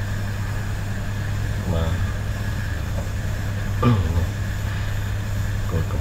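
A steady low hum runs throughout, with a voice speaking a couple of brief words about two and four seconds in.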